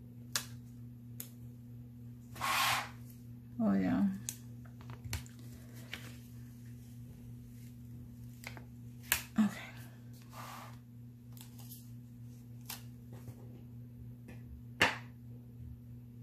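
Stickers and paper being handled on a spiral-bound planner: a handful of small sharp clicks and taps and a few brief rustles as sticker pieces are peeled off their sheet and pressed onto the page, over a steady low hum.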